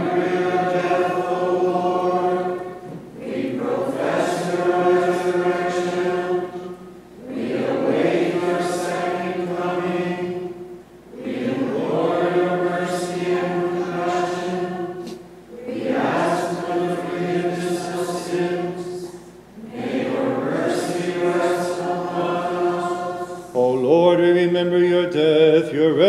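Maronite liturgical chant sung in about six phrases of three to four seconds each on held notes, with short breaths between. Near the end a single louder voice with a wavering pitch comes in over it.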